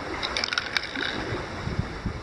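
Steady wind and sea noise, with a few light clicks and knocks in the first second as plastic flare cases are set down and picked up on rock.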